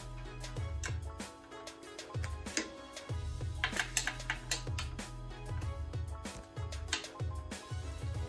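Background music: an instrumental track with a steady beat over a bass line.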